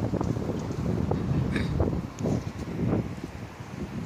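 Wind buffeting the microphone in gusts, a low rumble that rises and falls unevenly.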